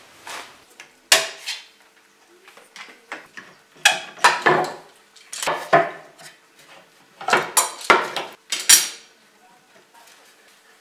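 Steel bar clamps and wooden boards being handled on a wooden workbench: irregular metallic clanks and knocks as clamps are picked up, slid and set down, busiest in a run of clatter near the end.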